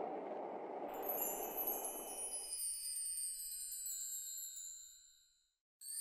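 Shimmering wind-chime sound effect: a glittering cluster of high ringing tones that slowly fades out over about four seconds, with a soft hiss under its first half. A fresh chime shimmer starts just before the end.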